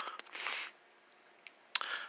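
Brief soft rustle of handling noise about half a second in, then near silence broken by a faint click, and a short sharp sound near the end.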